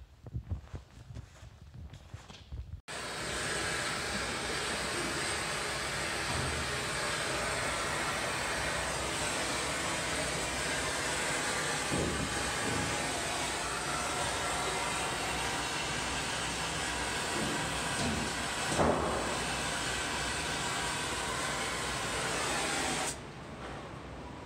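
Oxy-fuel gas torch flame hissing steadily as it heats a seized fitting to free it. It starts suddenly about three seconds in, has one brief louder burst about two-thirds of the way through, and cuts off abruptly just before the end.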